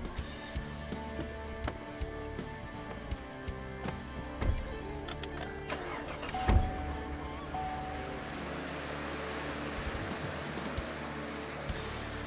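Background music over pickup-truck sounds: two thuds, the first about halfway in, the second a couple of seconds later, then a short steady electronic tone, and a vehicle engine running toward the end.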